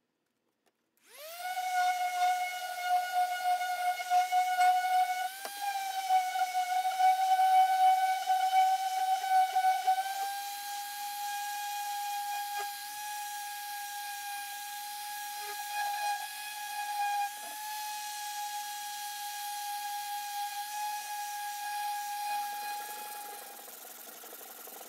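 Bosch random orbital sander starting up about a second in and running with a steady high-pitched whine while it sands a steel bayonet blade, the pitch stepping up slightly twice. The motor stops just before the end.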